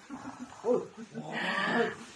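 A person's voice making playful monster-like noises: low short murmurs, then a louder, longer noise about a second and a half in.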